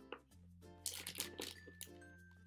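Soft background music, with a short cluster of crackly crunches about a second in: a small, hard, sour candy disc being bitten and chewed.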